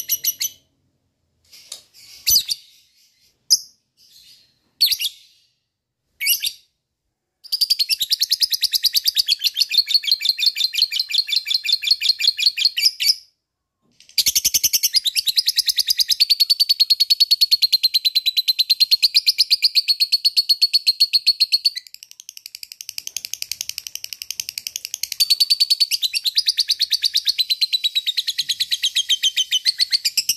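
Lovebird singing the long chattering trill called ngekek: a few short chirps in the first seven seconds, then a fast, evenly pulsed, high rattling trill for about five seconds, a one-second break, and the trill again without a pause.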